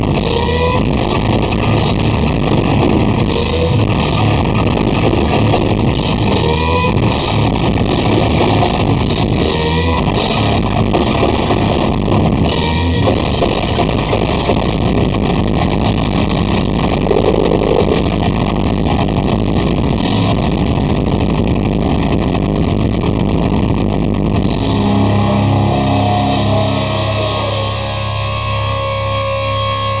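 Heavy metal band playing live at full volume, with distorted electric guitars and pounding drums, heard from within the crowd. About 25 seconds in the drumming stops and held guitar chords are left ringing.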